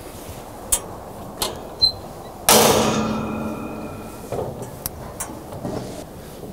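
A few light metallic clicks, then a heavy steel compartment door on a Komatsu WA600-8 wheel loader swung shut with one loud clang that rings and fades over about a second and a half.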